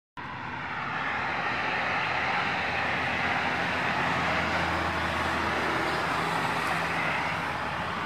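Highway traffic noise: a steady rush of passing vehicles' tyres and engines, fading in over the first second.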